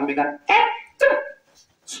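A man's voice through a microphone, breaking into short, loud shouted calls with gaps between them.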